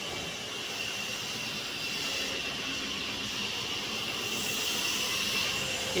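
Woodworking machinery running in a cricket bat workshop: a steady whirring noise with a constant high whine, growing slightly louder.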